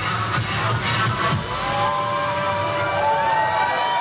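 Electronic dance music playing loud over a club sound system; about a second and a half in the bass beat drops out, and a trumpet plays long notes that bend and slide in pitch over the crowd's cheering.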